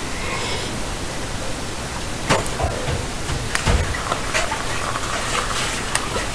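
Afterlight Box ghost-box software putting out steady static hiss, broken now and then by short clicks and chopped sound snippets as it sweeps through its sound banks.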